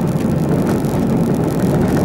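Car driving on an unsealed dirt road, heard from inside the cabin: a steady low rumble of engine and tyres.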